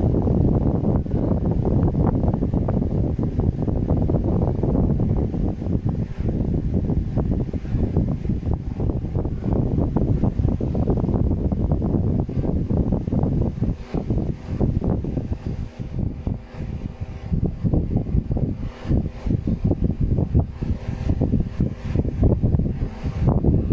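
Steady low rumbling air noise buffeting the phone's microphone, with crackles through it and a slight dip in level in the second half.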